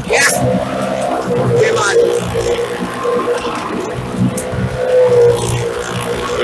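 Engines of stunt vehicles running steadily at constant speed as they circle the vertical wooden wall of a well-of-death motordrome, echoing inside the drum.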